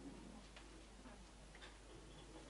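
Near silence: hall room tone with two or three faint, short clicks.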